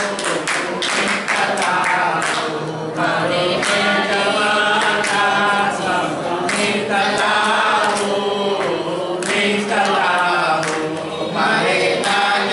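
A group of people singing together, with rhythmic hand-clapping keeping time.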